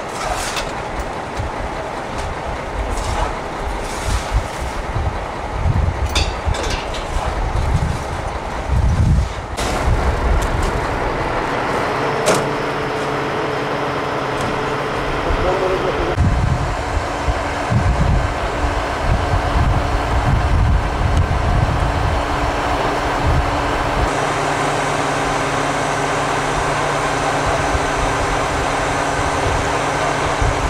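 A heavy recovery truck's diesel engine running steadily, with wind gusting on the microphone and voices in the background.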